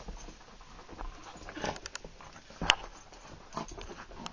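A small dog scuffling and rolling on carpet: soft, irregular scuffs and pattering, with one sharp click a little past halfway.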